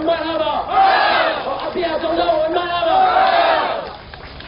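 Crowd of rally supporters shouting and cheering together, many voices at once, loud and swelling in waves, then dying down just before the end.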